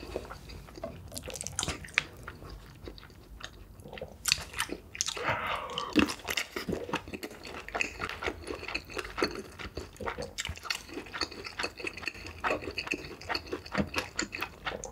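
Close-miked chewing of a mouthful of instant noodles: a steady, irregular run of soft wet smacks and small crunches.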